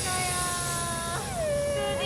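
A woman's voice drawing out one long, high-pitched call, held steady, then gliding down in pitch about a second in and held at the lower note, over a steady low background hum.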